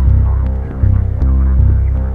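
Electronic instrumental beat: a heavy, pulsing synth bass line that changes note about twice a second, with crisp drum hits over it.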